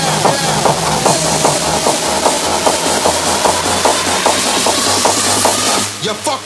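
Hardstyle electronic dance track playing a fast, steady beat. A rising sweep builds through the second half.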